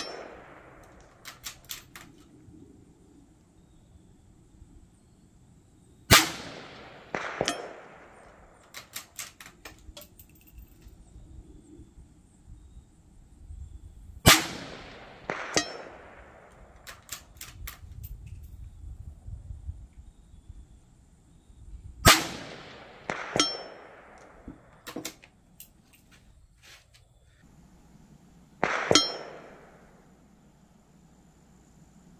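.17 HMR bolt-action rifle (Savage 93R17) firing four single shots about eight seconds apart, each sharp crack followed within a few seconds by lighter clicks and ticks.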